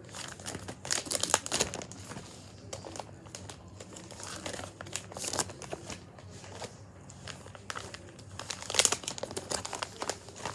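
Plastic sleeve pages of a trading-card binder crinkling and rustling as the binder is handled and its pages turned, in irregular bursts, loudest about a second in and again near the end.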